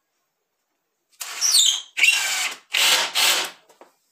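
Cordless drill-driver running in three short bursts as it drives screws into the wooden frame. The motor's pitch falls during the first burst as the screw takes up load.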